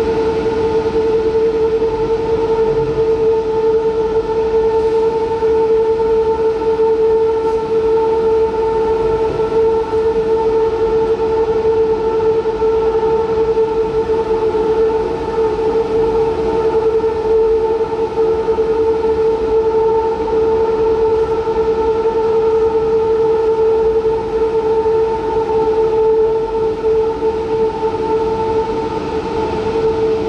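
Taichung MRT Green Line train running at a steady speed: a constant, unchanging motor and gear whine over the rumble of the wheels on the track.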